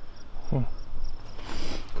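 Insects chirping, a steady high-pitched pulsing chirp repeating several times a second, with a brief rustle about one and a half seconds in.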